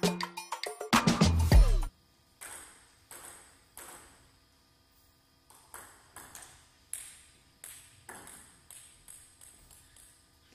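An intro jingle of music with a beat cuts off sharply about two seconds in. Then comes a celluloid-type table tennis ball knocking faintly off bats and table: a few spaced clicks, then a rally of about three hits a second, each with a short echo.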